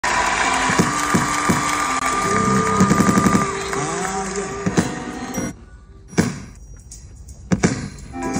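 Gospel music playing from a Stem Player while its stems are mixed by hand, with a few sharp hits in the first seconds. About five and a half seconds in, the music cuts out abruptly, leaving only faint sound and a few sharp hits.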